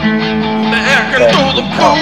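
A song: guitar accompaniment under a sung voice that holds a long note, its pitch wavering and sliding through the second half.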